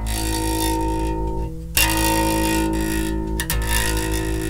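Electric bass guitar strings plucked one after another: three notes, each ringing on for about a second and a half before the next pluck, each string giving a different pitch.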